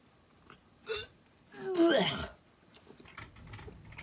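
A man gagging and retching in disgust at a mouthful of peanut butter: a short gag about a second in, then a longer, louder retch whose voice falls in pitch.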